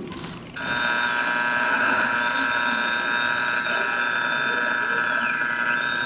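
A steady electronic signal of several tones held together, like an incoming-call alarm, starting about half a second in and played through the stage speakers; it is the call that the character then answers on a communicator.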